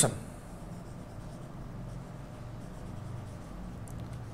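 Quiet scratching of a marker pen writing on a whiteboard.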